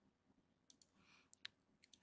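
A few faint computer mouse clicks, scattered over the second half, in near silence.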